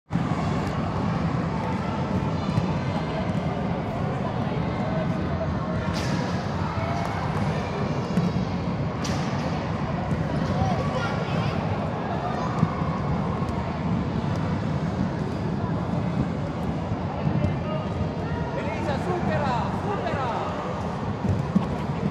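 Din of a reverberant sports hall: a steady rumble of many inline skate wheels rolling on the wooden floor, under distant children's voices and calls, with a few sharp knocks.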